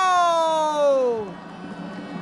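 A male football commentator's long, drawn-out cry, held on one note and then falling in pitch as it dies away about a second and a quarter in, reacting to a shot that hits the post. Quieter stadium background follows.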